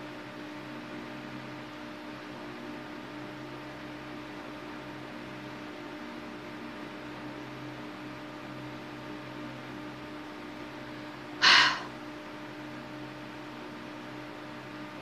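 Steady low hum with room noise, broken about eleven seconds in by one short, loud breath from the woman.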